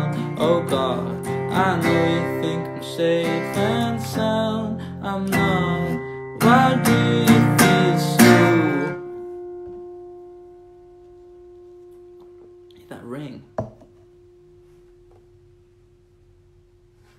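Acoustic guitar strummed along with a man singing, until about nine seconds in the song stops and the last chord is left to ring and slowly fade.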